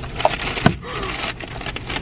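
McDonald's brown paper takeaway bag rustling and crackling as a hand rummages inside it, with a sharp click about two-thirds of a second in.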